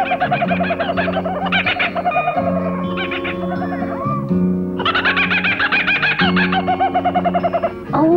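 Kookaburra laughing: rapid chuckling calls that rise and fall, in two bouts with a short lull between them, over background music.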